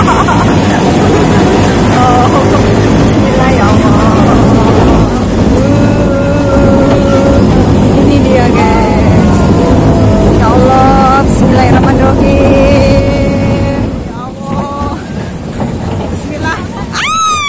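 Loud rumble and rush of a small family roller coaster running along its track, with riders' voices and calls over it. The noise drops about two seconds before the end as the ride eases.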